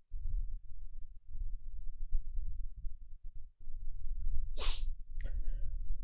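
A low rumble, then a short, sharp burst of breath from a man close to the microphone about four and a half seconds in, followed by a second, shorter one, like a sneeze.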